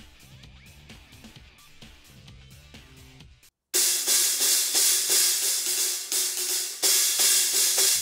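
A Meinl cymbal stack, a 10-inch Generation X Filter China on a 20-inch Byzance Big Apple Dark Ride, struck twice, about four seconds in and again near the end. Each hit gives a loud, bright, hissing wash. A small china on a larger cymbal like this gives a white-noise, electronica-like stack sound.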